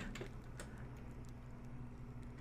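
A few faint, scattered clicks of computer input over a steady low hum.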